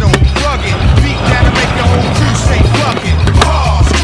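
Hip-hop backing track with a stunt scooter's small wheels rolling on concrete and a few sharp clacks from landings, one just after the start and two near the end.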